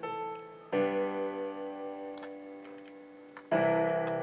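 Software piano chords played back as a loop, each chord sustained and slowly fading: one sounds a little under a second in, the next near the end, about three seconds apart.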